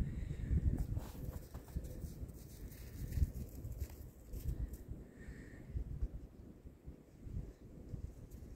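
Footsteps walking through snow, an uneven run of soft steps with a low rumble on the microphone.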